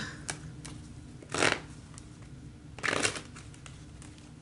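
A deck of tarot cards being shuffled by hand: two short swishes about a second and a half apart, after a few light clicks of the cards.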